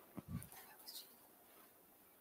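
Near silence: room tone in a hall, with a couple of faint, brief sounds in the first second.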